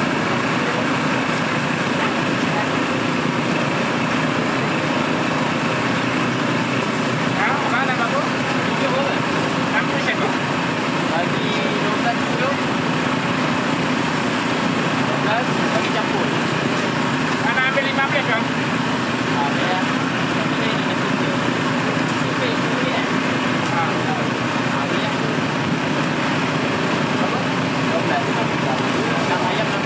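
Busy street-food stall ambience: a steady wash of background crowd chatter and noise around satay skewers grilling over a charcoal grill.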